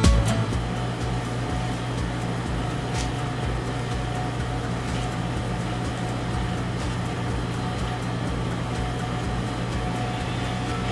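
Steady hum and hiss of cooling machinery running: a flower refrigerator and an air conditioner/dehumidifier, with an even low drone and a faint higher whine.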